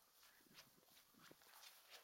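Near silence with a few faint footsteps on stone patio paving.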